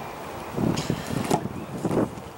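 A car's side door being opened: the latch releases with a couple of short clicks about a second and a half in, over rustling handling noise.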